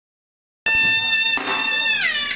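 A shrill double-reed pipe of the shehnai kind starts suddenly about two-thirds of a second in, holding one high, steady note. It is re-blown about halfway through and begins to slide down in pitch at the very end.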